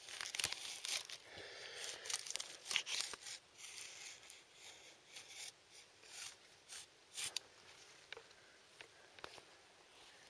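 Knife blade scoring into birch bark on a standing tree: a run of short, scratchy crackling and tearing strokes that thins out about seven seconds in.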